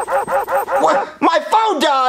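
Dog-like yipping barks: a fast run of about seven short, even yips in the first second, then a few longer, wavering yelps that bend up and down in pitch.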